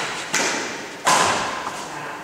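Two sharp hand slaps, the second louder, each trailing off in the echo of a large sports hall.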